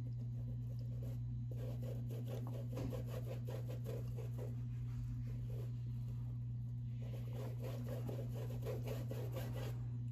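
Round pituá brush scrubbing paint onto canvas in quick circular strokes, a faint, evenly repeated scratchy swishing, over a steady low hum.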